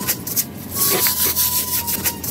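Rubber-gloved hands pressing and rubbing through glitter-covered slime in a plastic tub: repeated crackly, hissing rubs with a few small clicks.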